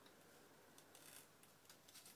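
Near silence: room tone, with a few faint, brief rustles of cloth and sewing thread handled at the fingers around the middle and near the end.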